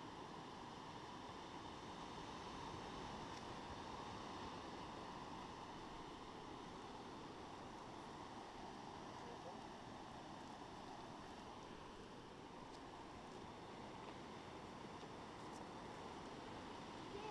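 Faint, steady wash of distant surf breaking on the shore below, mixed with a light rush of wind.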